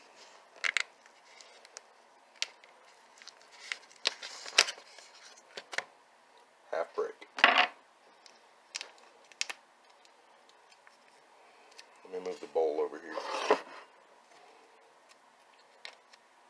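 Foil wrapper of a cream cheese brick crinkling and tearing as it is unwrapped by hand, in short scattered bursts with quiet gaps between.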